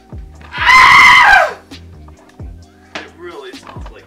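A loud scream lasting about a second, so loud it clips the microphone, falling in pitch as it ends. Background music with a steady beat plays under it.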